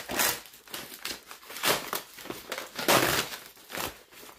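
Parcel packaging crinkling and rustling as it is handled and torn open, in several bursts, with the loudest about a third and three-quarters of the way through.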